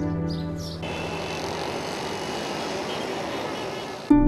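Soft background music ends a little under a second in. It gives way to steady road traffic noise from passing motorcycles and auto-rickshaws.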